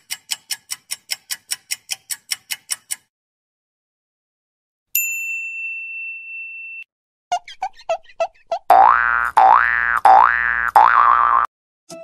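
Edited-in cartoon sound effects: a quick run of about fifteen ticks over three seconds, then a held electronic ding tone. Near the end come a few short blips and three rising boing sweeps over a low hum.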